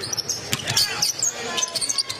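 Basketball bounced on a hardwood court, with short high sneaker squeaks on the floor over arena crowd noise.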